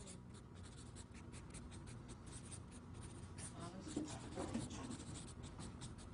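Felt-tip marker writing on a flip-chart pad: a faint run of short, quick strokes. A faint voice murmurs briefly near the middle.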